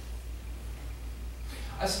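A pause in reading aloud: room tone with a steady low hum, and a woman's voice resumes speaking near the end.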